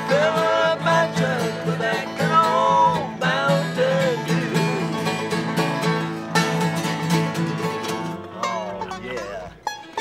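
Bluegrass band with five-string banjo and acoustic guitars playing the closing bars of an up-tempo country song. The music dies away a little over eight seconds in.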